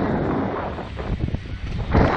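Wind rushing past and buffeting the microphone as the SlingShot ride capsule swings through the air, a loud gusting noise that swells and dips.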